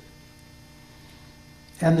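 A faint, steady electrical hum on the recording fills a pause in a man's speech, and his voice returns near the end.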